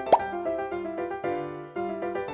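Light background music with bouncing, piano-like notes, with a single cartoon-style "plop" sound effect, a quick upward-sliding pop, just after the start.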